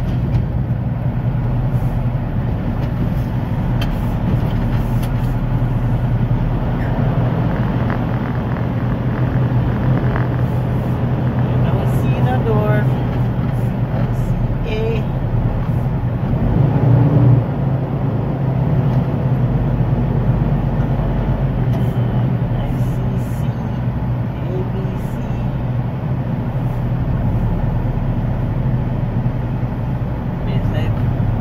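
Semi-truck tractor's diesel engine running steadily while it drives slowly along the road, heard inside the cab with road noise. The sound swells briefly about halfway through.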